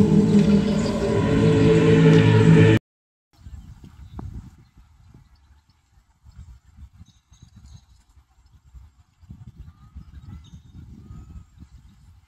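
Loud outdoor crowd with singing voices, picked up by a phone's microphone, cuts off abruptly about three seconds in. Then comes faint, uneven low rumbling of outdoor ambience with a few faint bird chirps near the end.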